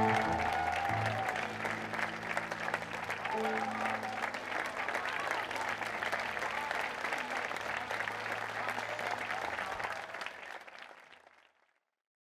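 Audience applauding while the held notes of a music cue die away beneath it; both fade out to silence shortly before the end.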